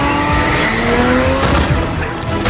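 Supercar engine revving, its pitch rising, with tyres squealing on a smooth floor, in a dense film sound mix.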